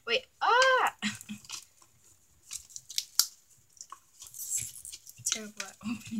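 A short hummed vocal sound with a rising-then-falling pitch just after the start, then scattered small clicks and crinkles of a plastic Tube Heroes capsule tube being handled and worked at by hand to open it.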